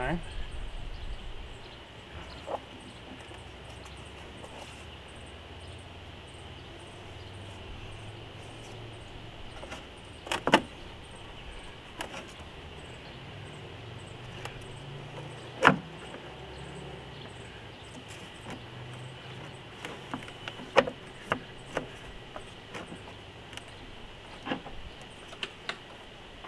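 Plastic C8 Corvette engine cover knocking and clicking against the engine bay trim as it is pressed and slid into place by hand. Three sharp knocks come about five seconds apart, then a run of smaller clicks near the end.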